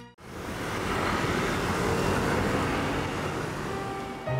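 Road traffic noise with a vehicle passing close: a steady rush of engine and tyre noise that starts abruptly.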